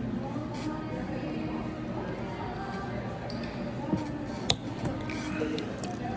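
Background music, with a sharp click about four and a half seconds in and a smaller one just before it: the pop-on case back of a ladies' Citizen Eco-Drive watch snapping shut as it is pressed between two plastic water bottle caps.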